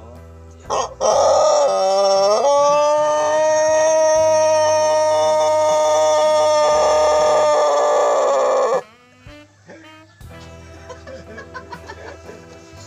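Long-crowing rooster giving one very long crow of about eight seconds: a wavering, broken opening, then a long steady held note that cuts off suddenly.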